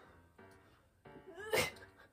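A woman's short strained vocal sound about one and a half seconds in, rising sharply in pitch and ending in a breathy burst, as she strains up through a sit-up.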